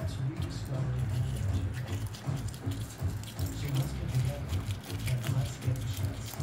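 Dog licking and chewing at a broken raw egg and its shell, a scatter of small wet clicks and crunches over a steady low background drone.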